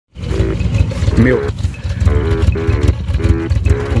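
Car engine idling, heard at the tailpipe as a steady low rumble; the owner blames its running on watered-down gasoline.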